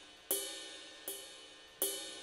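Soloed ride cymbal from a hip-hop drum track, struck three times at an even pace, each hit ringing out and fading before the next.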